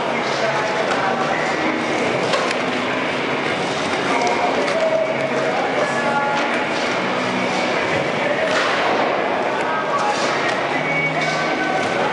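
Skateboard wheels rolling around a concrete bowl, with a few sharp clacks of the board, over a background of chattering voices in an echoing hall.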